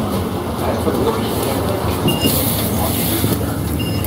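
Steady rumble of a moving city bus heard from inside the cabin, with a couple of short high beeps, one about two seconds in and one near the end.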